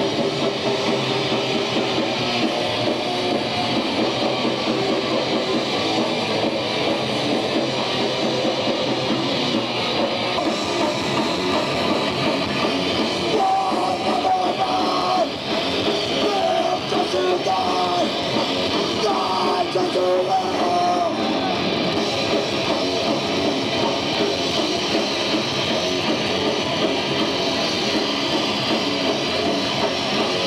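A live heavy metal band playing loud with distorted electric guitar, recorded from the floor of a small club.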